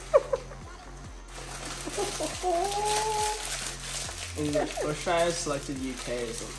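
Untranscribed voices in a small room: one drawn-out, held vocal note about halfway through, then brief talk near the end, over a low steady hum.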